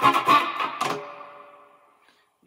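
Electric guitar strummed through a Wampler Faux Spring Reverb pedal into a Fender Mustang I amp. A few quick strums in the first second, then the last chord rings out in a reverb tail that fades away, with the spring-like 'delayed boing' at its end.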